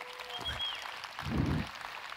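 Audience applauding, fairly faint, with a short dull low thud about midway.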